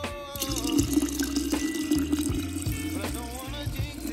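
Hot water poured in a steady stream into a glass jar of crushed grapes, with background music playing.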